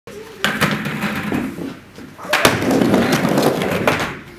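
Skateboard on a wooden mini ramp: a sharp slap of the board about half a second in, then a louder slap as it lands about two and a half seconds in, followed by the wheels rolling on the plywood.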